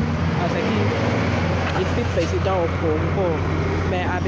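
A woman talking, over a steady low rumble of street traffic.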